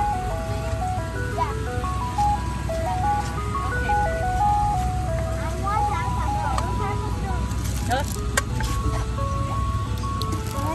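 Ice cream truck jingle: a simple chime melody of single steady notes stepping up and down, repeating, over a low steady hum from the truck.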